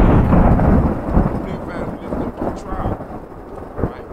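A loud thunder-like crash and rumble that begins suddenly just before and slowly dies away, with faint voice-like sounds mixed into it.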